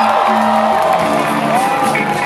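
Afrobeat band playing live: a bass guitar line under held, bending higher notes and quick percussion ticks, with the crowd cheering and whooping over it.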